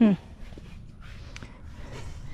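A woman's short, falling "hmm" at the start, then faint rustling and handling noise among tomato plants, with one small click in the middle.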